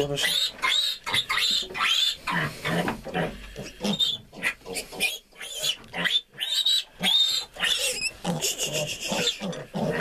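A young piglet squealing again and again, a couple of cries a second, while held by the hind leg and given an intramuscular iron injection.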